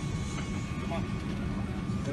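Steady low rumble of an airliner cabin, with faint passenger voices in the background.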